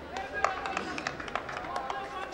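Men's voices calling and shouting across an open football pitch, with a few sharp knocks or claps in between.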